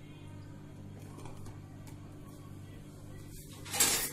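A steel cake tin is set down inside a larger steel pot on a gas stove, giving a few faint light clicks over a low steady hum. Near the end comes a short, loud scraping rush.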